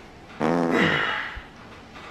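A loud, buzzing fart about a second long, its pitch dropping at the end.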